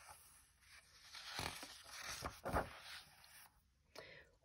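A page of a hardcover picture book being turned by hand: a faint paper rustle and swish between about one and three and a half seconds in, with a few soft flicks in the middle.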